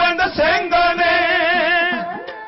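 Dhadi singing: a male voice sings a long, wavering melodic line in a chant-like style over a bowed sarangi accompaniment, fading somewhat near the end.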